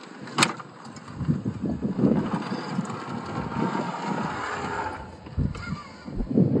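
Traxxas TRX-4 1/10-scale RC crawler climbing over rock: irregular crunches and knocks of its tyres and chassis on the stone, with a faint whine of its electric motor and gears in the middle. A sharp click about half a second in.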